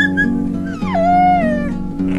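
Acoustic guitar music with a dog crying over it: a short high yelp at the start, then one long whine that slides down in pitch.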